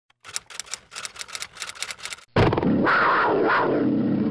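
Logo intro sound effects: a rapid run of typewriter-like clicks, about six a second, as the letters of the name appear. Then, a little past two seconds in, a sudden loud big-cat roar that holds on with a wavering pitch.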